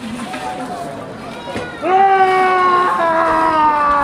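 A man's long, drawn-out vocal cries from the red-demon performer of the rite: a faint call near the start, then about two seconds in a loud held howl that slides slowly down in pitch. A single sharp click sounds just before the loud cry.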